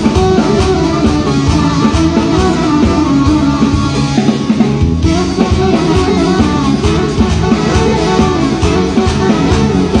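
Live band music played on electronic keyboards with violin and drum kit, with a steady beat throughout.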